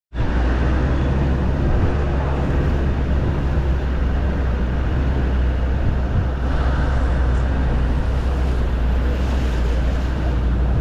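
Engine of an open game-drive vehicle running steadily as it drives along a dirt track, a constant low drone under rumbling road and wind noise.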